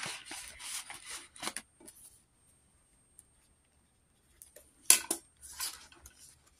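Paper banknotes rustling as they are handled and counted, falling quiet for a couple of seconds. About five seconds in come two short, sharp rustles as a page of the ring-binder budget planner is turned.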